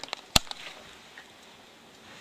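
A single short, sharp knock about a third of a second in, then faint room tone.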